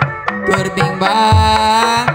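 Live Sundanese ronggeng music: hand drums beat a quick rhythm of about four strokes a second. About halfway through, a held high note sounds over a deep low tone.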